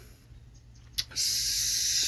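A click, then a loud hiss lasting about a second that cuts off abruptly, followed by a couple of soft clicks.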